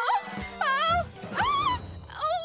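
Light background music with two high-pitched, wavering vocal cries about a second apart from a costumed character.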